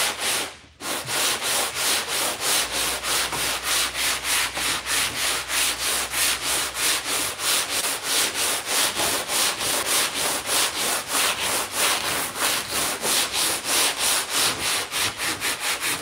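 Hutchins speed file, a long sanding board, rasping back and forth over cured Bondo body filler on a primed car hood in even strokes of about three a second. This cuts the filler down toward the primer.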